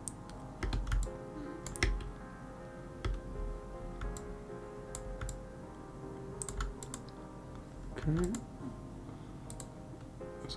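Scattered clicks of computer keyboard keys and a mouse, about a dozen irregular presses, over quiet background music.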